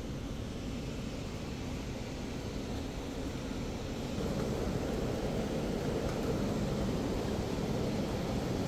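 Steady low rumble and hiss of indoor background noise in a large building, growing a little louder about halfway through, with no distinct events.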